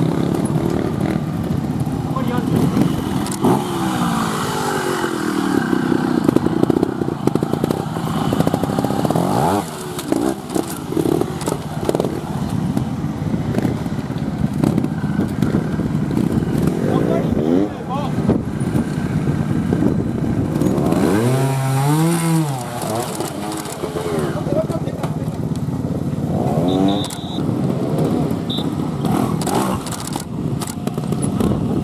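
Trials motorcycle engine blipped and revved in short bursts, rising and falling in pitch between lower running, as the bike is worked over rocks and concrete blocks; the longest and loudest rev comes about 21 to 23 seconds in. Voices of onlookers are heard under it.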